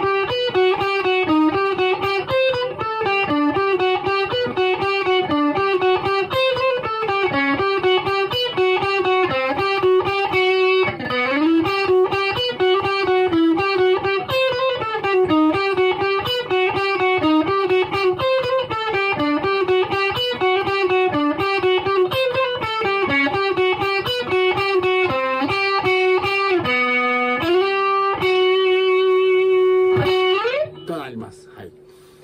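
Electric guitar, a Fujigen Stratocaster played through the 'TexasMan' preset (No. 52) of a Zoom G2.1Nu multi-effects pedal, runs through a steady stream of picked single notes in a repeating phrase accented on the high E string. About eleven seconds in, a note slides up in pitch. Near the end a few notes step up and one is held, ringing on.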